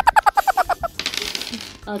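A quick run of about nine high-pitched, evenly spaced squeaky pulses, then a short clattering rattle of dice being thrown onto the table, with laughter near the end.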